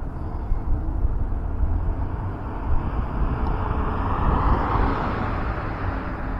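Road traffic: a car passing along the street, its noise swelling to loudest about four to five seconds in and then fading, over a steady low rumble.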